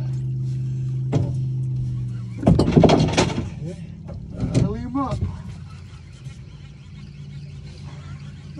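A steady, low motor hum that cuts off about two and a half seconds in. Loud voices and commotion follow for a few seconds, then a fainter hum remains.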